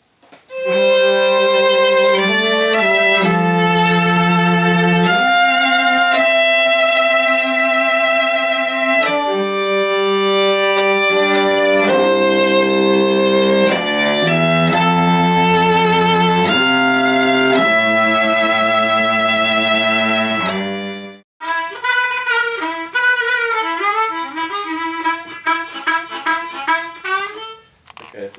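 Cello and violin playing slow, sustained bowed chords, the notes held and changing every second or two. After a sudden break near the end, a harmonica plays a wavering, trilling line.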